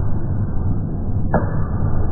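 Loud, muffled roar of a packed stadium crowd and PA sound picked up by a phone microphone, dull and bass-heavy, with a sudden sharp hit about 1.3 seconds in.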